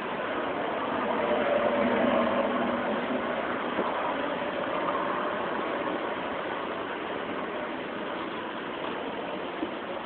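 Steady engine hum with a hiss over it, swelling a little about two seconds in.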